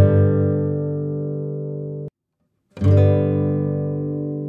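Slow instrumental guitar music: a chord is struck and rings out, fading, then cuts off abruptly into a moment of silence a little after two seconds in. A new chord is struck near three seconds in.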